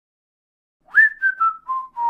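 Silence for about the first second, then a person whistling a short tune: five notes stepping down in pitch, the first swooping up into place and the last one held.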